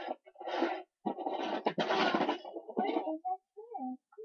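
Small plastic toys being rummaged through and clattered on carpet, with a quiet mumbling voice near the end.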